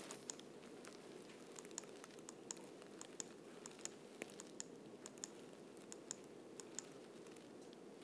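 Near silence: room tone with a faint steady hum and scattered faint small clicks.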